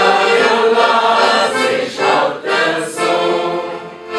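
Hohner piano accordion playing a tune with two women's voices singing along; the music dies away near the end.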